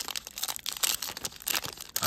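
The wrapper of a football trading-card pack being torn open and crinkled by hand: a rapid, irregular run of rips and crackles.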